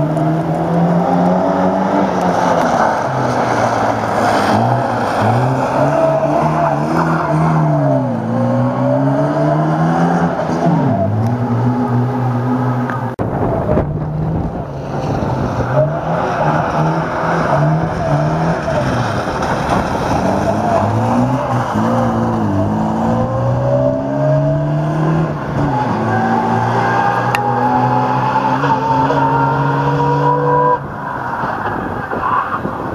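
Moskvich 412 rally car's four-cylinder engine revving hard, its pitch climbing and dropping again and again with throttle lifts and gear changes as the car drives the stage, with a long rising rev near the end. A rougher low rumble joins for a few seconds around the middle.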